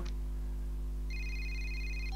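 Mobile phone ringing: an electronic warbling ring tone starts about a second in, over a steady low hum.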